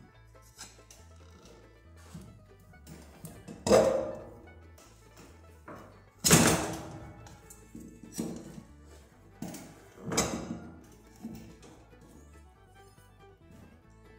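Steel pry bar knocking and scraping against a steel wheel rim as a tiller tire's bead is levered off. There are about five sharp clanks spread through the middle of the stretch, the loudest about six seconds in, over quiet background music.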